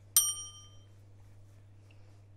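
A single light metallic ding: a small metal kitchen object struck once, ringing high and dying away within about half a second.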